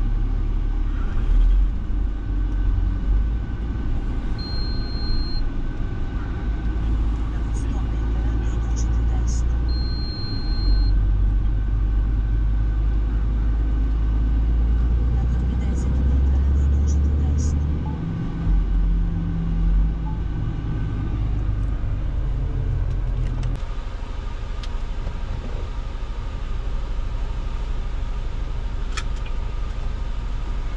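Inside a heavy truck's cab: the diesel engine running steadily under way, a low drone, with two short high electronic beeps about 4 and 10 seconds in. About three-quarters of the way through, the low rumble drops to a quieter, even engine note.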